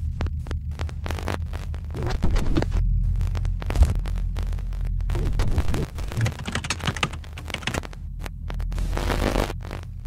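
Electronic logo sting: a steady low throbbing drone under irregular bursts of glitchy static crackle and clicks.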